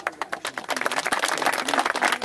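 A crowd applauding: many dense, irregular hand claps that break out suddenly.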